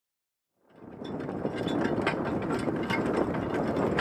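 Single-horse driving carriage under way, its metal frame and wheels rattling over a dirt track with irregular clicking mixed into the noise of the ride. The sound fades in just over half a second in.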